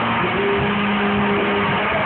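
Live rock band playing loudly, electric guitars holding long sustained notes over a dense wash of band sound.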